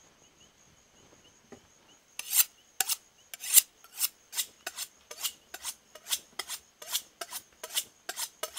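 A butcher's knife being honed on a sharpening steel: quick, rhythmic metal-on-metal scraping strokes, about three a second, starting about two seconds in.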